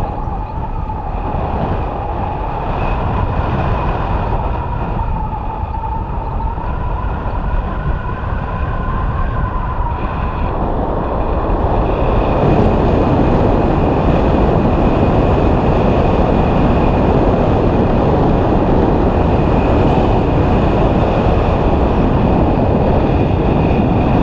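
Wind rushing over the microphone of a paraglider pilot's riser-mounted camera in flight, a dense rumbling rush that grows louder about halfway through as the glider turns. A thin steady high tone runs over it, with a lower wavering tone in the first half.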